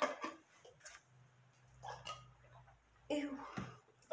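A person swallowing a drink in faint gulps, quiet apart from a low drone in the middle, then a disgusted "ew" near the end.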